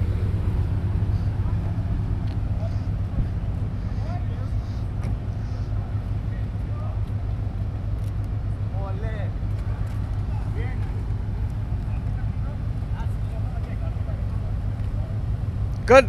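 Several parked exotic sports cars idling together with a steady low rumble, with faint voices in the background.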